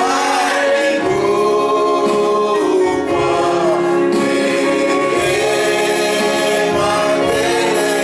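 A slow gospel hymn sung by men's voices amplified through a microphone, with other voices joining in. The notes are held long and glide gently between pitches.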